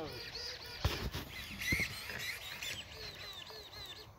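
Birds calling at dusk in quick runs of short, high chirps, with a single sharp knock just under a second in.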